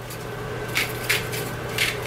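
Browned ground beef sizzling softly in a hot skillet, with three short gritty bursts as salt is added over it.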